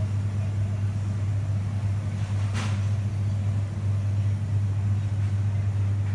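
Steady low electrical hum of shop refrigeration, the display freezer and chillers, with one brief rustle or click about two and a half seconds in.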